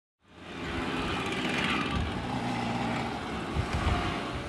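A column of vintage 50 cc two-stroke mopeds riding past close by, many small engines buzzing together, fading in at the start.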